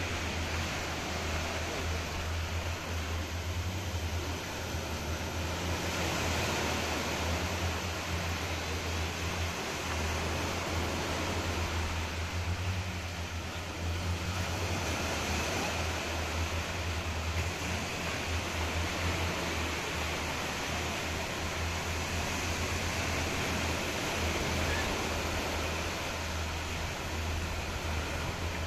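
Small waves washing up a sandy beach: a steady wash of surf that swells and eases slowly, over a constant low hum.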